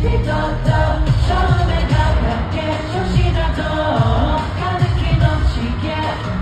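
Live K-pop song played over a big arena sound system, heard from the stands: singing over a heavy, steady bass beat.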